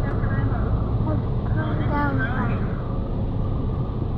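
Steady road and engine rumble inside a moving car's cabin on a highway, with a voice heard briefly about halfway through.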